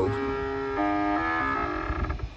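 Stepper motors of a home-built heliostat whining as they drive the large mirror toward its target, the tone holding steady and then jumping in pitch a few times as the motor speed changes.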